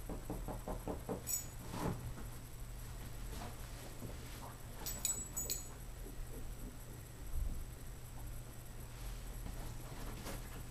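Fingernails scratching the fabric of a dog bed: faint rapid scratching in the first second, then a few light clicks and taps scattered through the rest, over a steady low hum.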